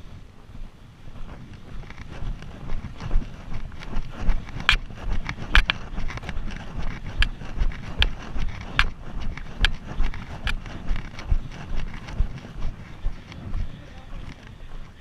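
Footsteps crunching on a loose gravel road at a steady walking pace, with sharp clicks among the steps, over low wind rumble on the microphone.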